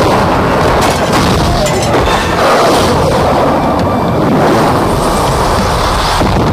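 Loud, continuous rumbling blast sound effects from a staged martial-arts fight, with a couple of sharp impacts about one and two seconds in.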